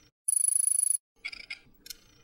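Logo-reveal sound effect: a bright, high chime rings for under a second with a rapid flutter, followed by a couple of short, fainter chiming notes.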